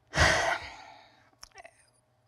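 A woman's long sigh into a close handheld microphone, loudest at first and fading away over about a second, followed by a few faint clicks.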